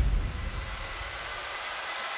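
The tail of a deep boom dies away at the start, leaving a steady hiss-like wash of noise with a few faint high tones.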